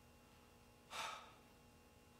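One short breath from a man, about a second in, against quiet room tone.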